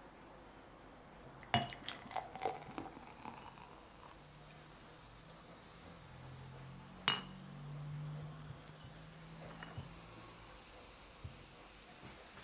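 Glass clinking as a beer bottle and a drinking glass are picked up and handled, with a run of light clinks early on and one sharp clink about seven seconds in. Beer is then poured from the bottle into the tilted glass, followed by a couple of soft knocks as they are set down.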